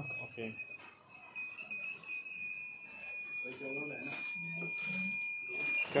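A digital multimeter's continuity buzzer sounds a steady, high beep for almost six seconds, with a short dip about a second in, as its probes rest on points of a phone circuit board. The beep signals a connected track between the probed points while the ringer IC's connections are traced.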